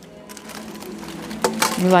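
Quiet indoor store ambience with no distinct event, then a person speaking from about a second and a half in.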